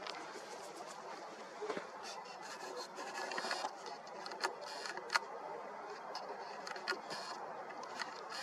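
Nikon Coolpix P1000's lens focus motor whirring faintly in short bursts, with a few small clicks, as the autofocus hunts between a nearby branch and the Moon.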